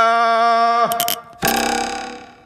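Cartoon sound effects: a steady held note lasting under a second, then a couple of quick clicks, then a shimmering ringing sound that fades away.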